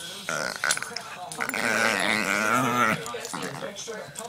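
A Shih Tzu making a drawn-out, wavering, growly vocalisation, the funny 'Chewbacca' sound, loudest from about one and a half to three seconds in.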